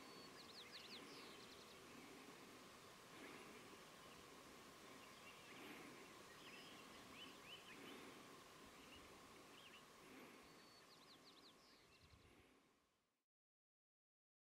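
Faint birds chirping in quiet outdoor ambience, short high chirps scattered throughout over a faint steady tone; the sound fades out near the end.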